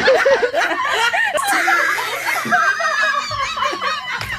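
Laughter: a run of rapid, high-pitched giggles and snickers that carries on without a break.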